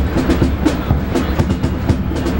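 Marching band playing, with quick, steady drum strokes over sustained wind and brass notes.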